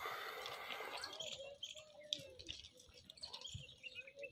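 Birds chirping faintly in short scattered calls, with a brief hissing rush of noise in the first second.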